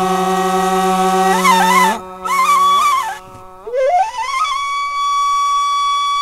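Instrumental music of a flute-like wind melody: long held notes ornamented with quick trills and turns, with no beat. A low held note gives way to a short dip about three seconds in, then one high note is held.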